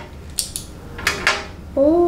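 Plastic pens being handled and opened, giving a few light clicks, about four in two pairs.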